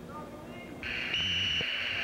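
Scoreboard buzzer sounding about a second in and held as a steady tone, signalling the end of the first wrestling period.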